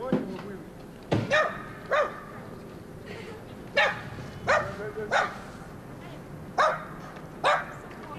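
A dog barking repeatedly: about nine short, single barks spaced half a second to a second and a half apart.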